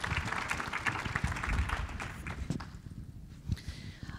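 Audience applause, a dense patter of claps that thins out and fades about two and a half seconds in, with footsteps on the stage.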